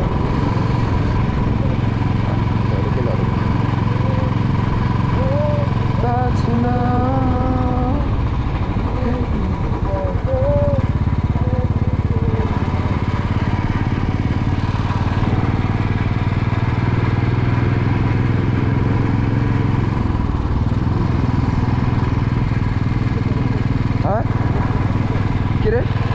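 Motorcycle engine running steadily at cruising speed, heard from the bike, with an unbroken low engine note. A voice comes in briefly between about six and twelve seconds in.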